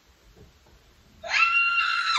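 A woman's high-pitched scream, starting suddenly about a second in and held loud at one steady pitch for about a second.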